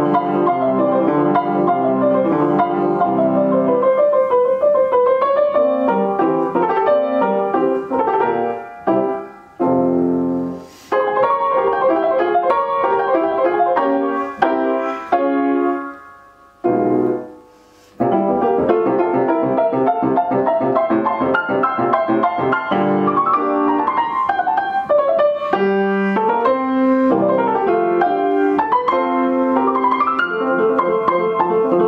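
Broadwood fortepiano from about the 1830s or 40s being played: a classical-style keyboard passage. Around the middle the playing stops briefly several times, the longest break lasting about a second.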